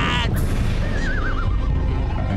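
Cartoon earthquake sound effect: a loud, continuous low rumble as the floor breaks apart. A man's quavering yell cuts off at the very start, and a wobbling whistle falls in pitch about a second in.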